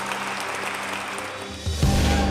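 Background music with held low notes over a room of people clapping; near the end the music turns into a louder, fuller passage.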